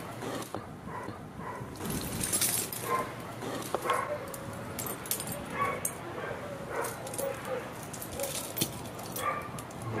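Dry crackling and snapping as a brittle, porous lump is crumbled by hand, small fragments breaking off and falling. Short high whines come and go over it.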